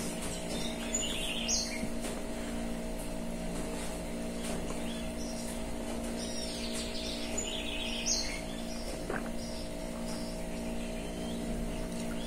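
Small birds chirping in short, scattered calls over a steady low hum.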